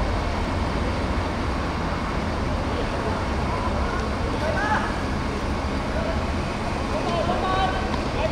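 Steady outdoor background noise with a heavy low rumble, over which players on the pitch call out faintly, once around the middle and again near the end.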